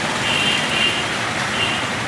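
Steady background noise with no clear single source, with faint high-pitched tones coming and going several times.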